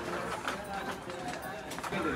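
Busy shop ambience: several shoppers talking indistinctly in the background, with footsteps and light clicks.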